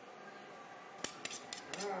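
A quick cluster of sharp metallic clicks and scrapes about a second in, from a metal hand tool working the rawhide head and cord lacing of a hand-made drum.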